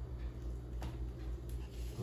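Faint scraping and light clicks of a metal fork run slowly along the inside edge of a plastic container, loosening a soft set filling from the sides, over a steady low hum.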